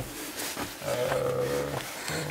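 A man's voice holding one drawn-out, level-pitched vowel sound for about a second, beginning just before the middle.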